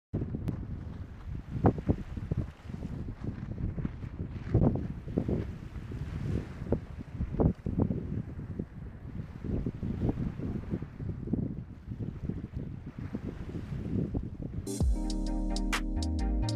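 Wind buffeting the microphone in irregular gusts. A short music jingle starts about a second before the end.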